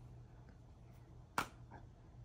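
A single short, sharp click a little past the middle, over quiet room tone with a faint steady low hum.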